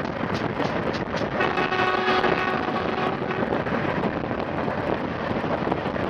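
Wind buffeting a microphone held outside a moving CP 2000-series electric train, over the train's running noise, with a quick run of clicks from the wheels in the first second. About a second and a half in, a steady pitched tone sounds for nearly two seconds.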